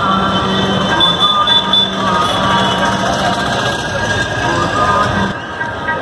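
Music with a steady low drone under a wavering melody; the drone stops about five seconds in.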